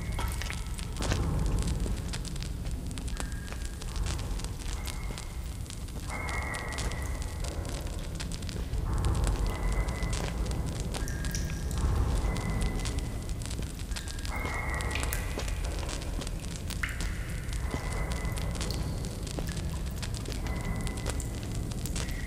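A burning hand-held torch: the flame runs with a low rumble and steady crackling. A short high tone comes and goes every few seconds over it.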